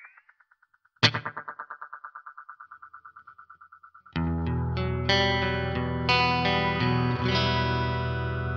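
Electric guitar through a Greer Black Tiger oil-can-style delay pedal. The dying repeats of a held tone fade out, with a slight rise in pitch as the pedal's knobs are turned. About a second in, a single plucked note sets off rapid echoes, about ten a second, that fade over three seconds; from about four seconds on, chords are strummed, thick with short delay repeats.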